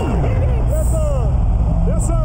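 Loud, deep droning blast over the arena sound system, starting suddenly the moment the button is pressed to light the beam, with voices over it.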